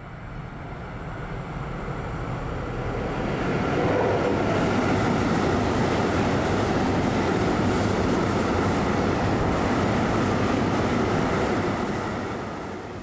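A train running through a railway station: the noise builds over the first few seconds, holds steady, then begins to fade near the end.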